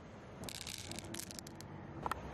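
A handful of loose pearls clicking and rattling against one another, a quick run of sharp clicks starting about half a second in and lasting about a second.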